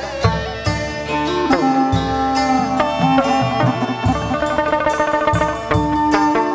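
Instrumental passage of Vietnamese chầu văn music: a đàn nguyệt (moon lute) plucked with bent, sliding notes, over a held bamboo-flute line and a steady beat of drum strokes.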